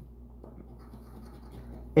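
A coin scraping the latex coating off a paper scratch-off lottery ticket, quiet and irregular.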